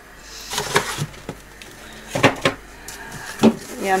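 Refrigerator door being opened and things inside handled: a handful of short clicks and knocks, scattered irregularly.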